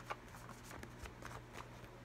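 A deck of tarot cards shuffled in the hands, faint, with a few soft card flicks near the start.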